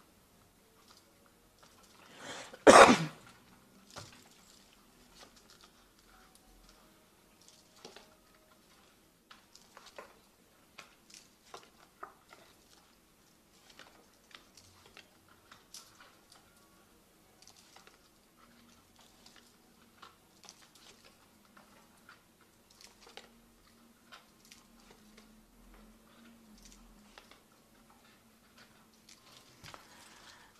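A short cough about three seconds in, then faint, irregular taps and soft rustles of a tarot deck being handled and shuffled.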